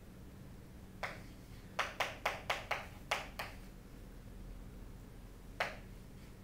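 Chalk knocking and tapping on a chalkboard as characters are written. There is one sharp tap about a second in, then a quick run of about seven taps over the next second and a half, and one more tap near the end.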